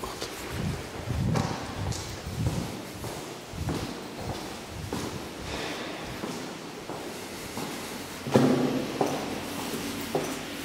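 Footsteps on a hard floor, roughly one to two a second, with a louder thud near the end.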